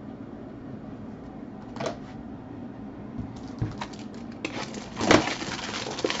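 Trading cards and their packaging being handled: a faint click or two over a low steady hum, then from about three seconds in a run of rustling, crinkling and crackling, loudest a little after five seconds.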